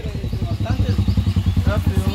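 Lifan motorcycle engine idling with a quick, even pulse, running again after a home repair.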